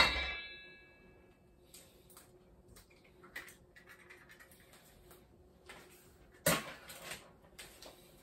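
An egg cracked against a stainless steel mixing bowl, the bowl ringing briefly and fading within a second. Soft taps and clicks follow, then another knock about six and a half seconds in.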